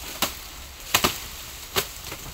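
Machetes chopping through raw, unburnt sugarcane stalks: four sharp strikes, two of them in quick succession about a second in.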